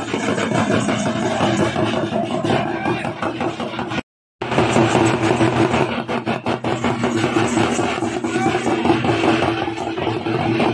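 Live festival drumming: dappu frame drums beaten in a fast, dense rhythm over a steady droning tone. The sound cuts out completely for a split second about four seconds in.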